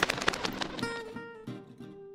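Soft background music: a few sparse plucked acoustic guitar notes, entering about a second in after a brief fading rush of noise at the start.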